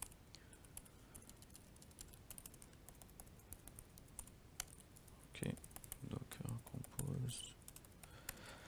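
Faint typing on a laptop keyboard: quick, irregular key clicks throughout, as terminal commands are typed.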